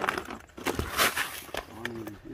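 Spiky durian fruits being handled: a rough scraping rustle about a second in, with a few knocks, as the fruit is lifted and set into a woven plastic basket. A man's voice starts near the end.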